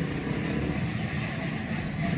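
Small ATV (quad bike) engine running steadily as it drives along a dirt track.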